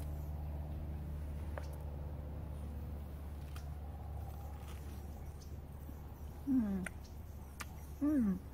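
A woman eating a freshly peeled mandarin, with a few faint mouth and peel ticks over a steady low background hum. About six and a half seconds in comes a short 'mmm' of tasting that falls in pitch.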